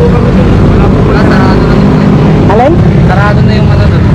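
A motorcycle engine idling steadily with a loud, even low rumble, with people talking over it.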